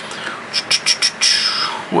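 Handling noise from a camera being moved and set down on a desk: a quick run of clicks and knocks, then a brief hiss.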